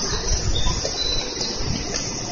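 Railway platform ambience beside a standing limited express train: a steady high hiss, with dull low thumps from footsteps and the camera being carried.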